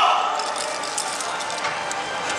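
A loud shouted call fades out at the very start, then scattered short clacks of naruko, the wooden hand clappers of yosakoi dance, as the dancers start to move.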